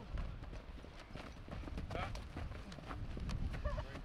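Outdoor field sound of a football lineman drill: scattered short knocks and clicks of pads and cleats as two linemen engage, over a low rumble, with voices calling faintly in the background.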